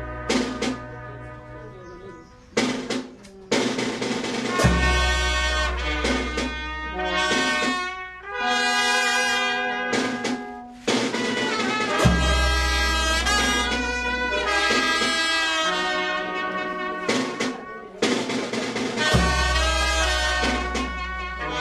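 Brass band music: held notes over a deep bass and drums, with a softer passage near the start before the full band comes back in.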